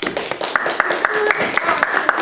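An audience applauding: many quick, irregular claps, with voices mixed in.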